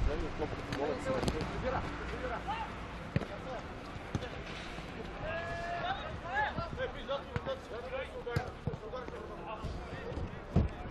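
A football kicked a few times, sharp thuds, amid players' calls and shouts across the pitch.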